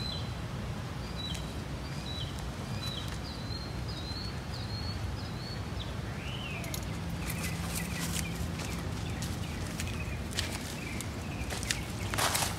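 Small birds chirping: a run of short, high chirps over the first few seconds, then a different, lower series of notes past the middle, over a steady low background rumble, with a few light clicks near the end.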